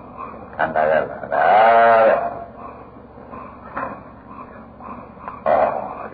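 A man's voice: a short word, then one long drawn-out, wavering syllable about a second and a half in, followed by a few seconds of faint hiss from an old recording before speech starts again near the end.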